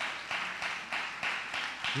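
A church congregation clapping in a steady rhythm, about three claps a second.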